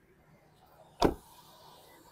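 A 2020 Toyota Vios car door shutting once about a second in: a single short thud.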